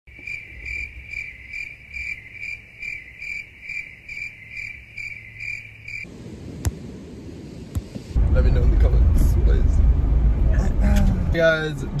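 A cricket chirping: a high, steady trill pulsing about three times a second, which stops suddenly about six seconds in. A louder low rumble follows from about eight seconds in.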